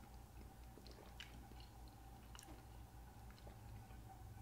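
Near silence with faint mouth sounds of wine being tasted: a few small lip and tongue clicks as it is worked around the mouth.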